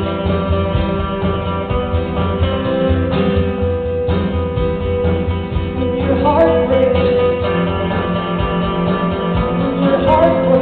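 Acoustic guitar strummed steadily in a live song, with a woman's singing voice coming in about six seconds in.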